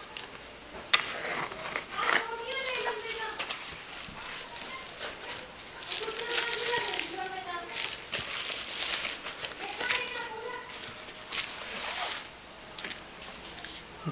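Utility knife slitting packing tape on a cardboard shipping box, then the flaps being opened and bubble wrap and cardboard rustling and crinkling, with a sharp click about a second in. A few short drawn-out calls sound in the background.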